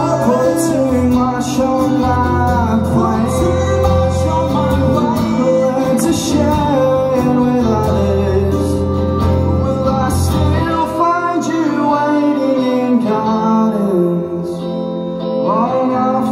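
Live acoustic set: two acoustic guitars strummed and picked under sung vocals through a PA. The deep bass notes stop about eleven seconds in while the guitars and singing carry on.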